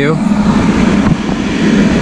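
Electric fan of a forced-air propane heater running with a steady, loud whir, switched on but not yet lit.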